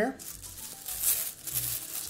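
Thin plastic wrapper crinkling and rustling irregularly as it is handled in the hands.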